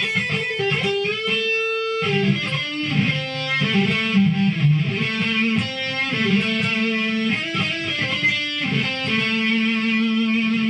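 Electric guitar, Stratocaster-style, playing a lead phrase in A minor pentatonic that keeps going back to the added ninth (B). It is a run of single notes with some pitch glides, ending on a held note in the last second.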